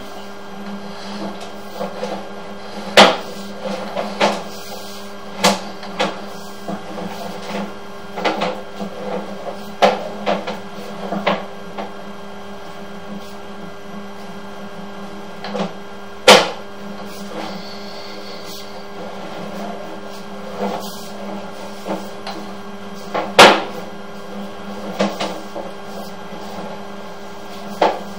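Sewer inspection camera's push cable being fed down a sewer pipe: irregular sharp knocks and clatters, loudest about three, sixteen and twenty-three seconds in, over a steady electrical hum.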